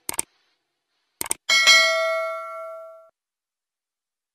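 Sound effect for a subscribe-button animation: two quick pairs of mouse clicks, then a notification bell dings about a second and a half in and rings out for over a second.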